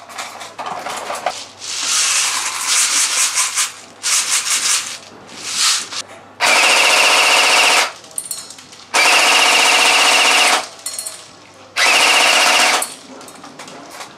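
Tokyo Marui M16 Vietnam electric airsoft gun firing a series of full-auto bursts. The shorter bursts come first, then three longer, louder bursts of over a second each. The BBs are hitting hanging metal frying-pan targets.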